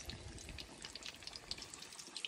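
Faint sizzling of batter-coated paneer pakoras frying in hot oil in a kadhai, with small scattered crackles.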